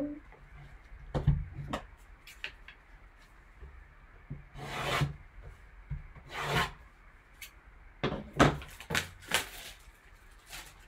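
A sealed cardboard trading-card box being handled and cut open with scissors: light knocks and clicks of the box and wrap, with two short rasping cuts about five and six and a half seconds in and a cluster of sharper clicks and rasps near the end.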